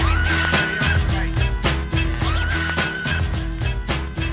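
Background hip-hop music with a heavy bass and drum beat and a repeating synth lead that swoops up and holds a high note about every second and a half.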